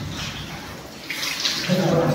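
Water splashing and sloshing across a soapy, foam-covered floor as it is washed with detergent, louder from about a second in. A brief voice comes in near the end.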